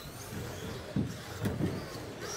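Radio-controlled electric stock trucks running on an indoor carpet track, their motors and gears whirring over a busy room, with two sharp knocks about half a second apart near the middle.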